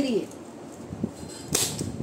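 Deck of tarot cards handled, with a light click about a second in and a brief papery riffle of the cards near the end.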